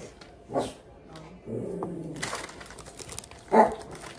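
Dog barking: a short bark about half a second in and a louder one near the end, with paper crinkling in between.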